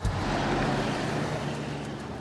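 Scene-transition sound: a low thump, then a steady rushing noise with a low droning hum underneath.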